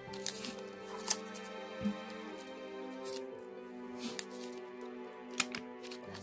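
Foil trading-card pack wrappers crinkling and tearing open in the hands, a few short sharp crackles about a second apart, over steady background music.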